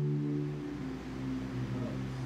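Sustained keyboard chords held underneath, a low, steady pad of notes that moves to a new chord partway through.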